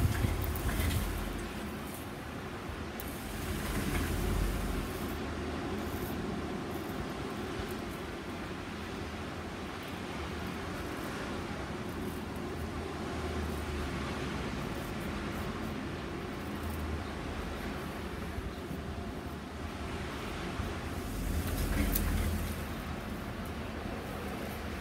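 Low rumble like thunder, swelling a few times, from the building's very heavy storm doors.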